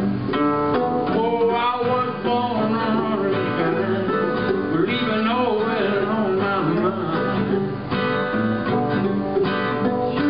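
Acoustic guitar and mandolin playing a country song live, a lead line bending up and down in pitch over the strummed chords.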